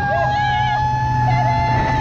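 Jet ski engine running at speed with water rushing past the hull. Over it comes a long, drawn-out vocal whoop that rises at the start and holds, with a shorter wavering voice briefly alongside.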